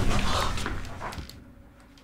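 A low, ominous film-score drone fading out over about a second and a half, with a short strained vocal sound over it near the start.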